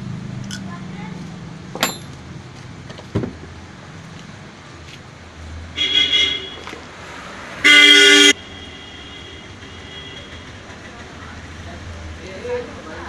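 A vehicle horn honks once, loud and steady in pitch for under a second, about seven and a half seconds in, after a shorter, fainter honk around six seconds. Under it runs a low steady hum, with two sharp clicks near two and three seconds.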